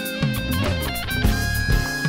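Live band music: a nylon-string silent guitar plays a melody over electric bass and drums.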